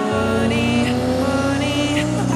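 Sports car engine accelerating, its pitch climbing smoothly and steadily.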